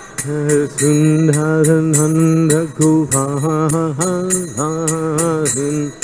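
A man singing a Vaishnava devotional chant in long, held notes, keeping time with small hand cymbals (karatalas) struck about three or four times a second.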